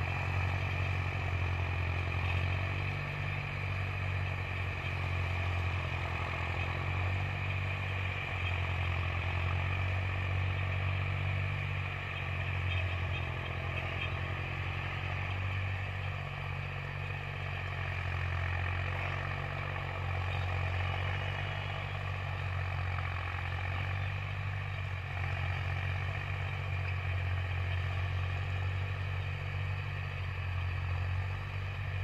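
Tractor engine running steadily under load as it pulls a 10-foot Sonalika rotavator tilling a field, a continuous low drone from the engine and working rotavator.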